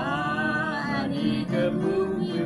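A man singing a hymn from a hymnbook in long, held phrases, a new phrase beginning at the start.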